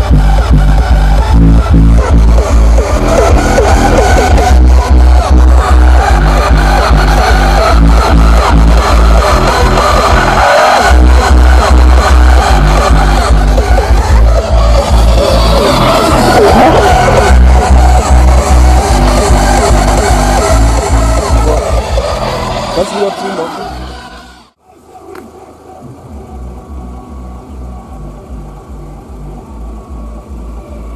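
Bass-heavy electronic music played loud through a car's Ground Zero GZHW 30X 12-inch subwoofer, with deep, repeating bass notes. About 23 seconds in, the music fades out and the sound drops to a much quieter level.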